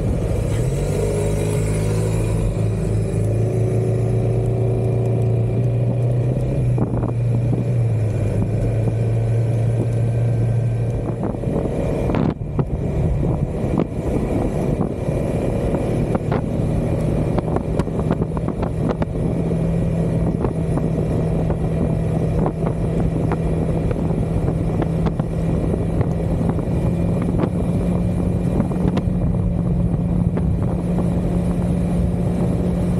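Maxi-scooter engine running at a steady cruise, with wind and road noise. The engine note holds steady, then settles at a higher pitch about halfway through.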